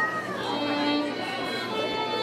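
Violins playing held notes, one sliding down in pitch near the start, over a low murmur of voices.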